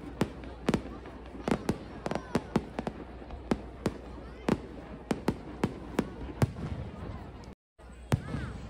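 Aerial fireworks bursting overhead: an uneven string of sharp bangs, about two or three a second, the loudest one late in the stretch. The sound cuts out for a moment just before the end.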